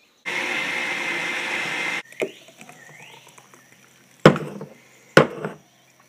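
Countertop blender running on a fruit smoothie for about two seconds, then cutting off suddenly. Two sharp knocks follow near the end, about a second apart.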